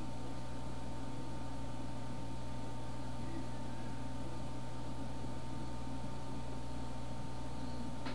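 Steady low electrical hum and hiss with a thin steady high whine, unchanging throughout, with no distinct sound event.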